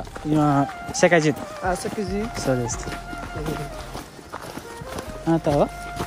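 Voices talking over background music with a steady held tone.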